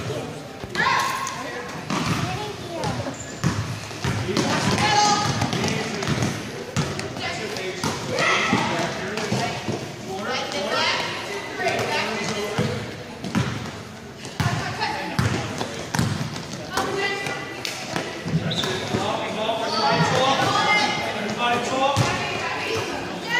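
Basketball game in a gym: spectators and players talking and calling out throughout, over repeated thuds of a basketball bouncing on the court floor.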